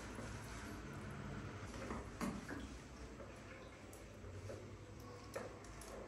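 Faint handling sounds of a wet baby monkey being rubbed with a cloth, with a few soft clicks about two seconds in and again near the end, over a low steady hum.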